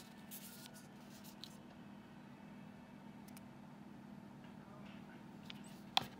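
Faint handling of a plastic flip-top lotion bottle over a steady low hum, with a few soft rustles in the first second or so and one sharp click at the end.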